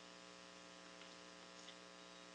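Near silence: a steady electrical mains hum with faint hiss in the sound system.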